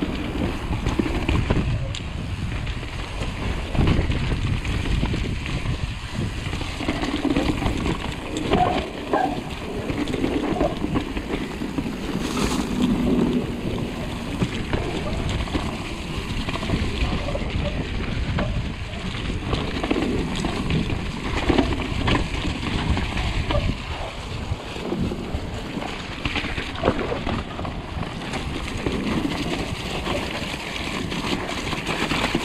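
Mountain bike riding down a muddy woodland trail: knobbly tyres squelching and splashing through wet mud while the bike rattles and knocks over roots and ruts.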